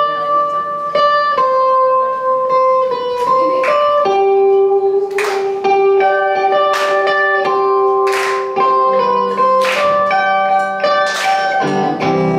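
Electric guitar playing a slow lead melody of single picked notes, each held and ringing for about a second before the next.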